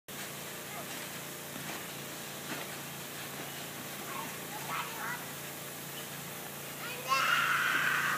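Children's voices while playing: faint high calls midway, then a child's loud, high-pitched shout lasting about a second near the end, over a steady hiss.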